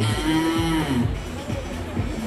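A drawn-out vocal "aah" into a microphone: one held note about half a second long that then trails off, over a low rumble of hall noise.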